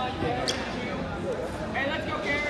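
Indistinct voices talking in a large gymnasium, with one short, sharp, high squeak or click about half a second in.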